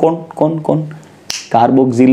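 A man speaking as he lectures, with a pause a little past the middle. In the pause comes a single sharp click.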